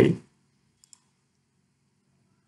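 A faint, sharp computer mouse click a little under a second in, over a faint low steady hum, after a spoken word trails off.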